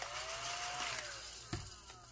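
Scratch-off sticker on a paper savings-challenge card being scraped off, a dry, even scratching for about a second and a half that ends in a light tap.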